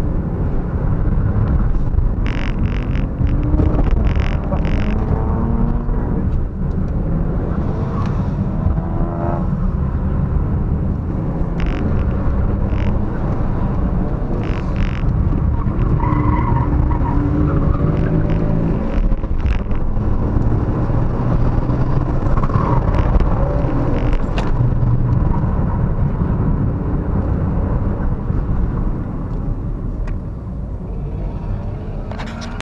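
2015 Ford Focus 1.0 EcoBoost turbocharged three-cylinder, heard from inside the cabin, revving up and falling off again and again as the car is driven hard, over a heavy low rumble of road and tyre noise. Brief tyre squeals come in several times, and the engine settles lower near the end.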